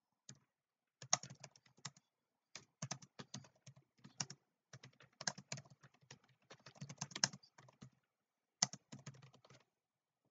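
Typing on a computer keyboard: several quick runs of keystrokes separated by short pauses.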